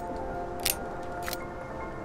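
Three sharp metallic clicks about two-thirds of a second apart as a semi-automatic pistol is handled, over soft background music with sustained tones.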